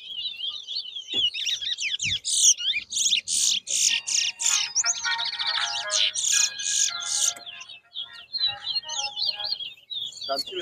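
Caged towa-towa (lesser seed finch) singing in a whistling contest: fast, warbling runs of high whistled notes, nearly unbroken, with a short break about eight seconds in before the song picks up again.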